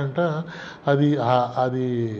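A man's voice in long, drawn-out tones, dropping away briefly about half a second in.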